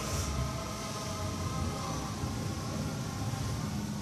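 Steady low rumble of gym room noise with a faint hum running through it; no clank of the barbell.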